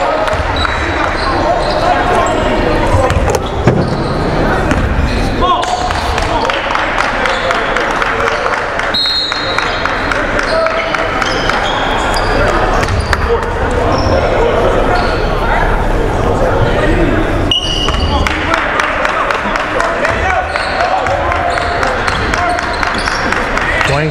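Basketball game sounds echoing in a large gym: a ball bouncing on the hardwood floor, with players' and spectators' voices and short high squeaks mixed in.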